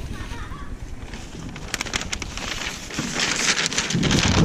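Pink butcher paper being picked up and handled, crinkling and rustling, with the crackle growing denser in the second half.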